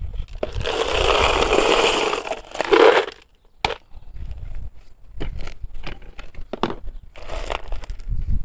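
Handling noise from a small plastic pot of gritty succulent potting mix: a long crunching rustle of about two and a half seconds, then scattered clicks and short scrapes.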